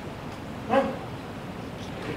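A single short, high-pitched spoken 'What?', about a second in, over a steady background hiss.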